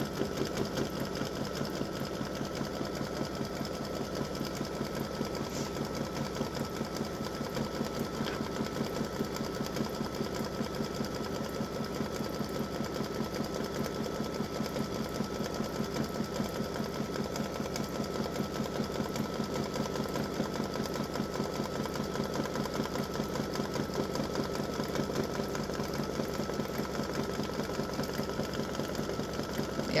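Baby Lock Visionary embroidery machine running, stitching a satin-stitch border: a fast, even needle rhythm with a steady tone underneath, unbroken throughout.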